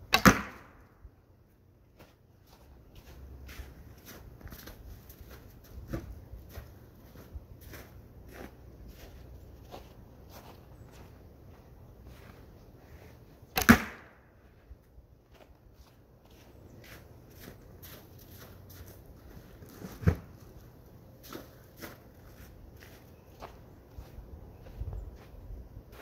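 Two arrow shots from a traditional rawhide-backed bow: a sharp string release just after the start and a louder one about 14 seconds later. Fainter knocks come between and after them.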